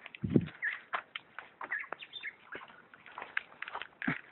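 Leaves and twigs of storm-felled trees brushing and snapping against a handheld camera as someone climbs through the debris, a dense run of crackles and clicks. A heavy thump comes about a third of a second in.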